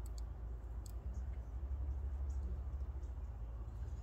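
A few faint light clicks as a copper cable lug is worked onto the stripped strands of a heavy battery cable, over a steady low hum.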